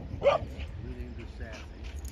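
A dog gives one short, high bark about a quarter second in, over a steady low rumble.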